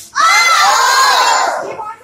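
A class of children shouting out together in chorus, one loud burst of many voices lasting about a second and a half.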